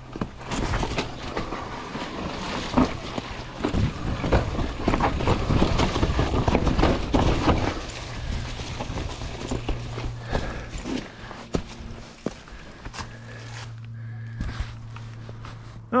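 Mountain bike rolling down a rocky, leaf-covered trail: tyres running through dry leaves, with rattling and knocks from the bike over rocks and roots, loudest in the first half. In the quieter second half a steady low hum runs under the rolling noise.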